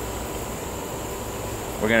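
Steady outdoor insect chorus, a constant high-pitched buzz, over a low steady hum. A man's voice comes in near the end.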